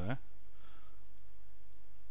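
Two faint computer mouse clicks, about half a second apart, over a steady low hum.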